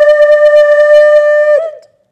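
A loud, single held horn-like note, steady in pitch and buzzy with overtones, that cuts off about one and a half seconds in.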